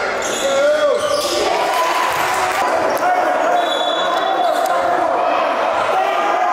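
Echoing gym ambience of a basketball game: indistinct overlapping voices of players and spectators, with a basketball bouncing on the hardwood court.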